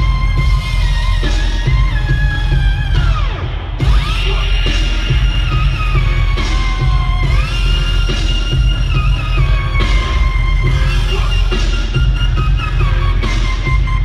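Heavy electronic bass music played loud through a live concert sound system, with a deep pulsing bass line under gliding synth leads. About three to four seconds in, the top end drops out briefly under a falling pitch sweep before the full track comes back.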